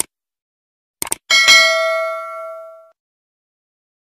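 Click sound effects, one at the start and two quick ones about a second in, then a bell ding sound effect that rings and fades out over about a second and a half. These are the stock sounds of a subscribe-button animation, with the mouse clicking and the notification bell ringing.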